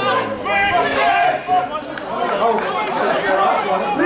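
Indistinct chatter of several voices talking over one another, with no single voice clear.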